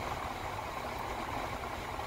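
Car air-conditioning blower running at full blast, a steady rush of air over the low hum of the idling engine, heard inside the car's cabin.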